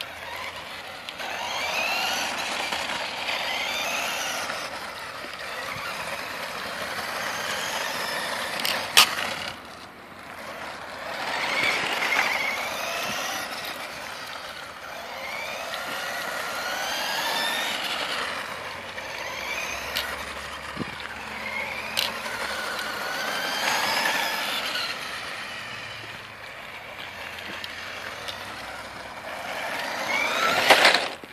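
Maisto Tech Baja Beast toy-grade RC buggy's small electric motor whining, rising and falling in pitch as it speeds up and slows down in repeated surges. There are a few sharp clicks, the loudest about nine seconds in.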